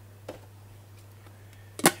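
A boxed Funko Pop figure set down on a tabletop: a light tap, then a sharp knock of the cardboard box landing near the end, over a steady low hum.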